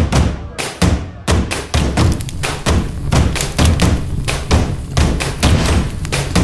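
Festival drums beaten in a fast, driving rhythm, about three to four loud, bass-heavy strikes a second.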